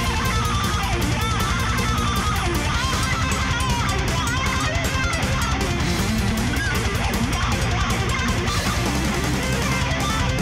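Thrash metal band playing at full tilt: a fast, wavering electric guitar solo over distorted rhythm guitar, bass and rapid drums.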